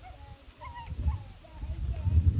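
German Shepherd puppy whining in a few short, wavering whimpers about half a second in, over low rumbling noise.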